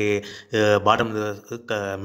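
A man's voice speaking with long, drawn-out vowels held at a steady pitch, in three stretches.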